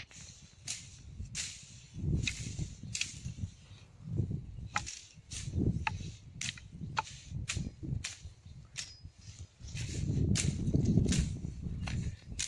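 Machete cutting through ferns and brush: over a dozen sharp, irregular chopping strokes, with low rustling of the vegetation between them.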